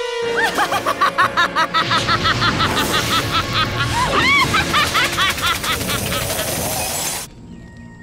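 Animated-cartoon fire effect: a dense rush of flame noise with a rapid run of short rising-and-falling tones over it, under dramatic music. It cuts off abruptly about seven seconds in.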